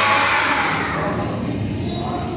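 Many children's voices shouting together, dying away over about the first second into a low murmur.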